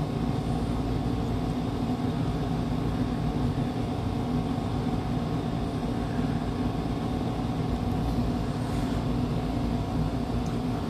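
Steady low machine hum with a few fixed tones over an even hiss, unchanging throughout.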